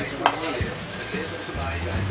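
A few light clicks and knocks of food being handled on a plate, the sharpest about a quarter second in, over soft background music.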